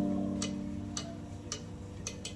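Music played back on an AKAI GX-635D reel-to-reel tape deck: a sustained low chord slowly fading, with a light tick about twice a second.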